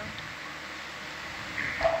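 Steady background hiss of the ship's control room, with a voice starting to speak near the end.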